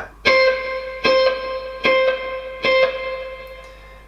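Clean PRS electric guitar playing one high note on the B string four times, evenly spaced about 0.8 s apart. Each note rings and fades before the next.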